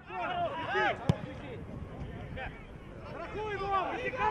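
Players and spectators shouting and calling across an open football pitch. There is one sharp knock about a second in, a ball being kicked.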